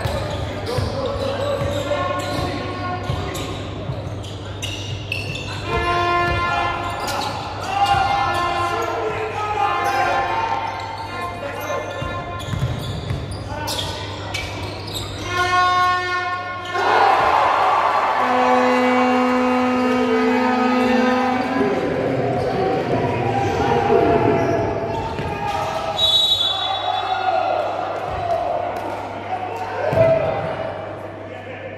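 Basketball game sounds echoing in a gym: the ball dribbling on the hardwood floor among shouting voices. A low horn sounds for about three seconds past the middle, and a short high whistle comes near the end.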